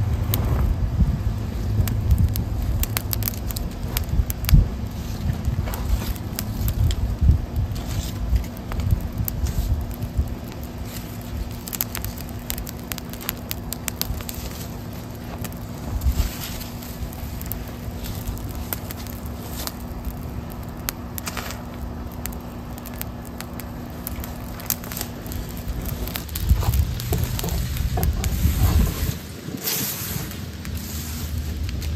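A small pile of dry kudzu and damp oak leaves burning after a ferro-rod spark, crackling and popping throughout. A low rumble runs underneath.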